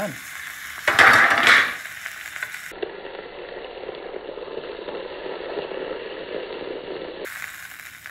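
Steak sizzling as it fries in butter in a carbon steel skillet, with a brief louder hiss about a second in as the lid comes off, then a steady sizzle while a wooden spatula works under the meat.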